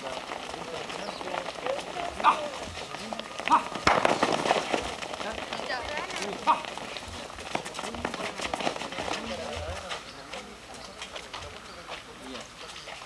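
Basketball players' voices and short calls mixed with scattered scuffs and taps of sneakers shuffling on a concrete court. A dense clatter of scuffs about four seconds in is the loudest part.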